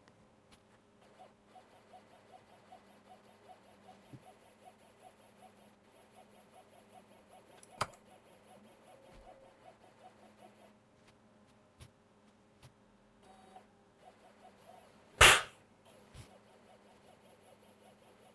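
Small stepper motors on A4988 drivers turning slowly, giving a faint, evenly spaced stepping tick that stops after about ten seconds. A single short loud noise comes about fifteen seconds in.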